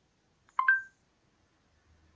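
Amazon Alexa smart speaker giving a short two-note electronic chime, the second note higher than the first, about half a second in.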